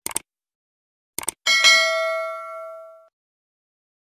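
Sound effects of a subscribe-button animation: a quick pair of clicks, another pair just over a second later, then a bell ding that rings out and fades over about a second and a half.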